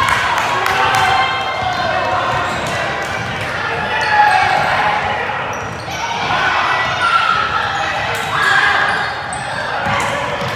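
A basketball bouncing on a hardwood gym floor with players' quick footfalls, under continuous chatter and shouting from spectators and players, all echoing in a large gym.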